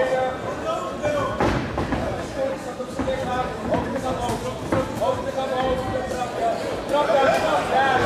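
Spectators and cornermen shouting in a hall during a kickboxing bout, with a few sharp thuds of punches and kicks landing.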